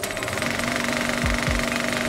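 Film-projector clatter sound effect: a rapid, even mechanical rattle, with held music tones underneath.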